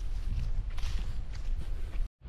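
Footsteps walking on a grassy trail, a few soft steps over a steady low rumble.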